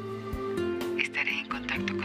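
Background music of held, sustained notes that shift to new pitches a couple of times.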